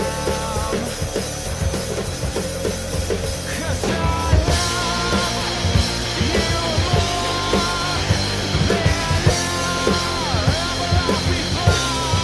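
Acoustic drum kit played live over a rock backing track with singing. About four seconds in, the music lifts into a fuller, louder section with brighter cymbals.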